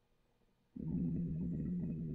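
A man's low, drawn-out wordless vocal sound, a groan-like hum of frustration, starting suddenly about three-quarters of a second in after near silence and holding on steadily.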